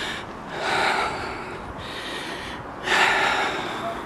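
A woman breathing heavily as she walks uphill, with several loud breaths, the strongest about a second in and about three seconds in. She is out of breath from the climb, which she puts down to being seven months pregnant and having chronic asthma.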